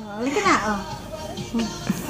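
A baby vocalizing briefly in the first half-second, a short sliding voice sound, with music playing in the background.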